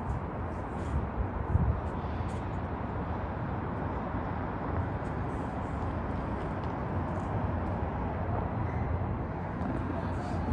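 Steady rushing noise with a low, uneven rumble underneath, with no clear single event.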